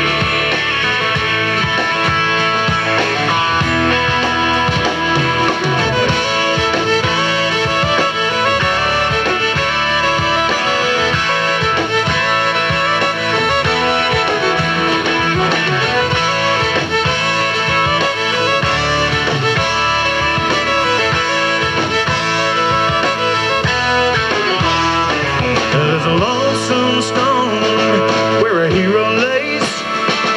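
Instrumental break of a country-rock song: full band with guitars, bass and drums, and a fiddle bending through a lead line.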